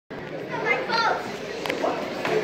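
Children's voices and chatter in a large room, with no music yet; a sharp click comes near the end.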